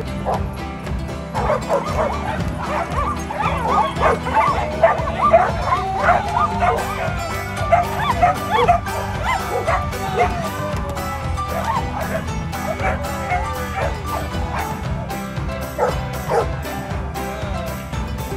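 Several dogs barking, yipping and whining excitedly, many short calls overlapping in the first half and a few more near the end, over background music with a steady beat.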